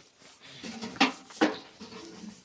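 Two sharp knocks or clatters about half a second apart, under faint murmuring voices.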